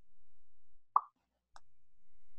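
A single short pop about a second in, followed by a fainter click, as a code block is dragged and snapped into place in a drag-and-drop block-coding editor.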